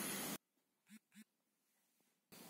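Room noise cuts off suddenly near the start, leaving near silence. Two brief, faint sounds from a man's voice come about a second in, a quarter second apart, each rising slightly in pitch.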